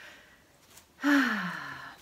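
A woman's audible sigh about a second in: a breathy, voiced exhale that falls steadily in pitch over about a second.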